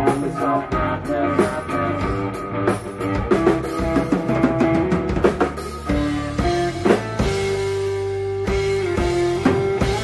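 Live rock trio playing an instrumental passage with no singing: electric guitar, bass guitar and a drum kit with bass drum hits.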